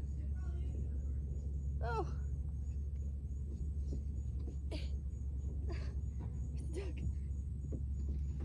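Steady low outdoor rumble, with a girl's brief "oh" about two seconds in and a few faint scuffs and knocks later on as she settles into the top of a plastic slide.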